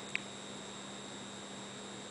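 Faint steady electrical hum with a thin high whine over it, and one very short high-pitched beep just after the start.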